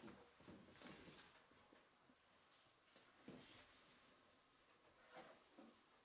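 Near silence: room tone with faint, scattered rustles and soft knocks, most likely from the dancers' slow movements and clothing.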